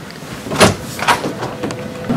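An office door being pulled open, with hurried footsteps: a few sudden knocks and scuffs, the loudest about half a second in.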